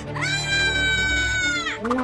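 A high-pitched crying wail, one long held cry of about a second and a half that sinks slightly in pitch, over quiet background music.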